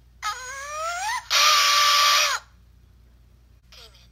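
A cartoon character's voice sliding upward in pitch, then breaking into a loud, harsh scream held for about a second that cuts off abruptly, played through a handheld game console's small speaker.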